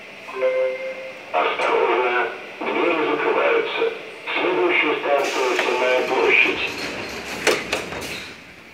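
A metro train's onboard public-address system: a brief tone, then a recorded voice announcement of about five seconds, typical of the doors-closing warning and next-station call. Near the end come sharp knocks as the car's doors close.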